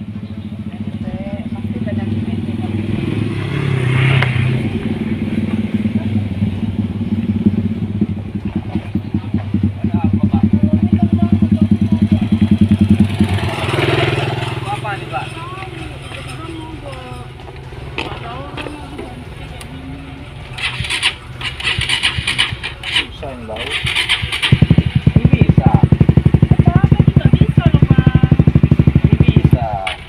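Sport motorcycle engines running: a bike rides up, its engine swelling louder over the first dozen seconds with brief revs, then easing off. Near the end a motorcycle engine idles loud and close with an even pulse, cutting off abruptly.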